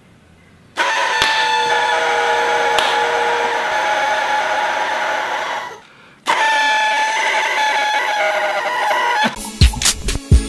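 Paper party blower (blowout noisemaker) blown twice: a long buzzy horn note of about five seconds, then after a short breath a second note of about three seconds. Near the end, music with a beat comes in.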